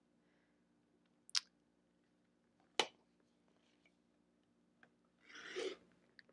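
Quiet, with a faint steady hum and two sharp clicks about a second and a half apart. Near the end comes a short rasp: a rotary cutter starting to slice through cotton fabric along a quilting ruler, trimming off the selvage.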